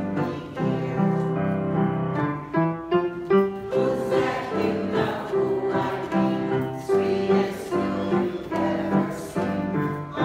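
Choir singing with grand piano accompaniment.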